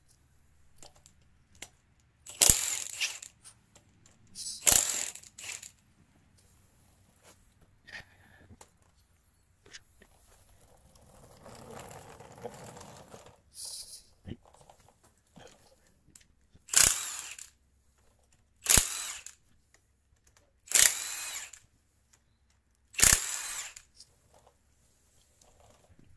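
Milwaukee Fuel cordless impact wrench with a 10 mm 12-point Sunex impact socket, hammering off connecting-rod nuts in six short bursts. Two bursts come near the start, then four more about two seconds apart in the second half.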